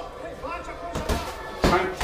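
Two sharp thuds, about a second in and again near the end, the second the louder: boxing-glove punches landing during sparring. A man's voice from an MMA broadcast's commentary sounds faintly beneath them.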